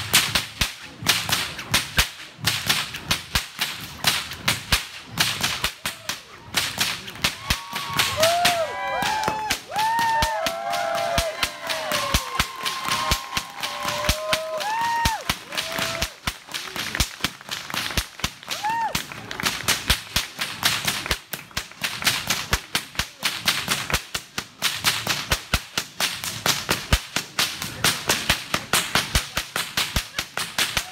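Whips cracking in a rapid, unbroken rhythm of several sharp cracks a second, the pattern of a Queen's Cross whip-cracking routine.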